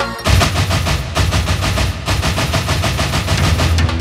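A rapid, machine-gun-like burst over heavy bass, played loud through a dance sound system. It cuts in suddenly about a quarter of a second in, in place of the electronic music before it.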